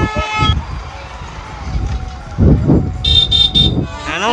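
A vehicle horn sounds with a steady pitch and cuts off about half a second in. Street noise follows, then three short, high-pitched beeps near the end.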